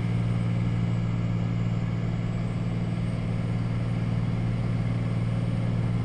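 Steady road and engine drone of a moving vehicle, heard from inside the cab.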